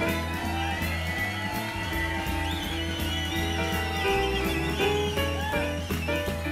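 Live band playing an instrumental stretch of a laid-back blues-rock song, with a steady bass line under sustained guitar and keyboard notes.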